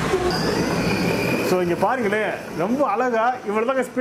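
A kids' battery-powered ride-on scooter's electric motor and gearbox whining as it pulls away, a steady high whine that cuts off about a second and a half in. After that, a voice calls out in rising and falling tones.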